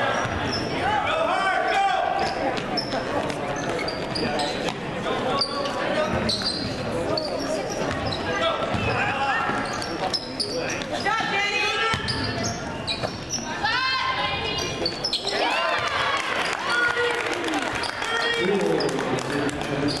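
Basketball game play on a hardwood gym court: the ball bouncing as it is dribbled, with players and spectators calling out at intervals and laughter near the end.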